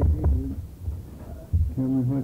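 Indistinct voices on an old interview tape, over a low, uneven rumble.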